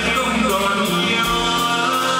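Live band music with a male singer: a Vietnamese pop song with held notes over a steady drum beat, recorded from among the audience.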